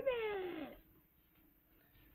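A cat meowing once, one call falling in pitch that lasts under a second.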